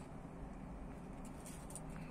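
Quiet background: a faint, steady low hum and hiss with no distinct sound event.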